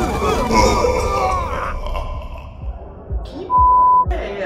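Voices with music behind them, fading out about two seconds in. A few low thumps follow, then near the end a loud, steady electronic beep of one pure tone lasting about half a second.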